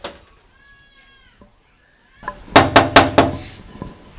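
A sharp rap on a glass door at the very start. Then, after a short silence, a loud wavering animal call, pulsed like a bleat, lasting about a second.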